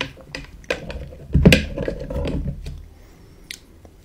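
Close-miked crunching and clicking sounds: a few sharp clicks, then a louder crackly burst about one and a half seconds in that goes on for about a second, and a last click near the end.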